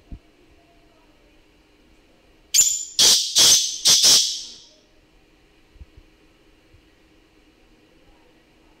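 Black francolin calling: one loud, harsh phrase of about five rapid notes, lasting about two seconds, starting a little before the middle.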